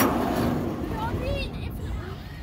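A knock as the playground zip-line seat sets off, then the trolley rolling along its overhead track with a rushing noise that fades over about a second and a half. A child's short squeals come in about a second in.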